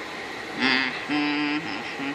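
Steam-engine whistle toots: two held notes, with a third starting near the end.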